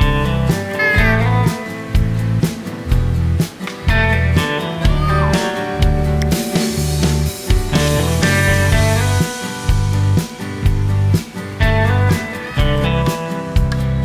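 Upbeat background music with a steady, repeating bass beat and pitched melody lines.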